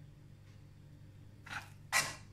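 A metal spoon scoops mashed potato from a stainless steel pot, giving two brief scraping noises near the end, the second louder, over a low steady hum.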